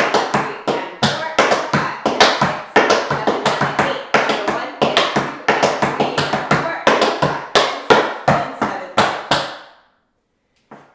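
Tap shoes striking a wooden tap board in a fast run of crisp, rhythmic taps: riffs, spanks and heel and toe drops of a riff and rhythm-turn exercise. The tapping stops shortly before the end.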